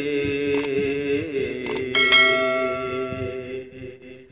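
A man's voice holding a long sung note of a Punjabi Sufi kalam, fading out near the end. Over it come two short clicks and then, about halfway through, a bright bell chime that rings and fades: the sound effect of a subscribe-button animation.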